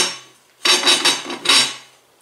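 3D-printed plastic mount being slid by hand into the slot of a 20 mm aluminium extrusion: a sharp click, then three short scraping strokes of plastic on metal.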